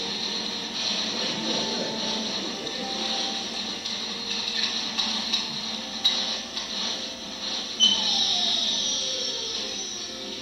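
Soundtrack of a computer-animated video played over a hall's loudspeakers and picked up from the room: a steady noisy bed with a few sharp clicks, and a falling tone about eight seconds in.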